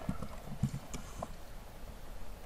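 A few keystrokes on a computer keyboard, each a short dull click, spaced about half a second apart in the first part.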